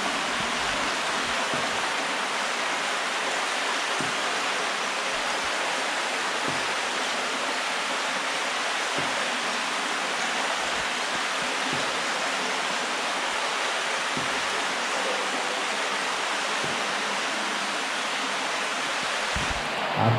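Shallow stream water flowing steadily through a corrugated steel culvert, an even rushing sound with no change in level.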